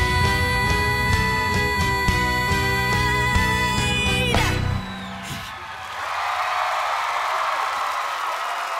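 A young woman belting a long held final high note over a full band, the voice and band cutting off together about four and a half seconds in. A moment later the audience breaks into applause and cheering.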